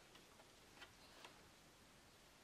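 Near silence: room tone with a few faint ticks, the clearest two about a second in, close together.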